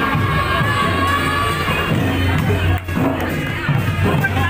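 A crowd of wedding guests talking and cheering over music, with a high voice held in a long call through the first second and a half.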